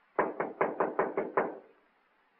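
Rapid knocking on a wooden door: seven quick, even knocks in a little over a second.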